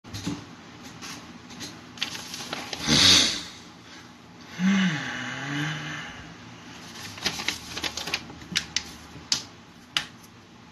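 Handling noises at a desk: scattered sharp clicks and taps, coming in a quicker run near the end. There is one loud rushing burst about three seconds in, and a short low hum from a man's voice, falling in pitch, around five seconds.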